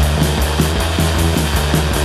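Raw early-1980s UK82-style hardcore punk: distorted guitar and bass over fast, driving drums.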